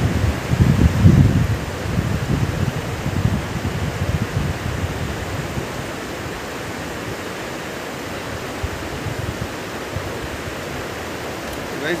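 Mountain river rushing over rocks, a steady hiss of water. Low rumbling noise rides over it in the first half, loudest about a second in and gone by about six seconds.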